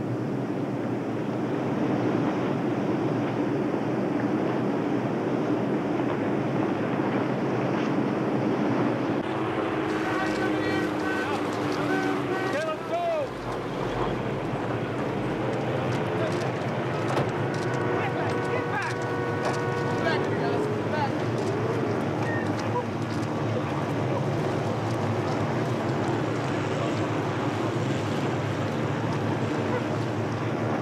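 Steady rushing noise, like wind or running water, with muffled voices under it.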